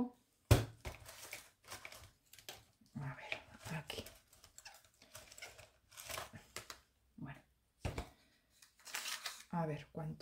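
Rustling and handling noises as a tape measure is got out and handled, with a sharp click about half a second in.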